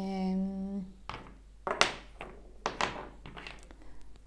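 Small wooden cubes knocking and clacking as they are picked up and set down on a wooden table, several light knocks with the sharpest about two seconds in.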